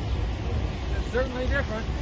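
A steady low rumble, with faint voices about a second in.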